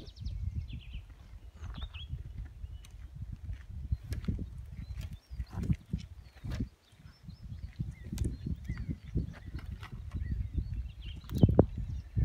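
Wind buffeting the microphone outdoors: an uneven low rumble that swells and drops, with a few faint clicks.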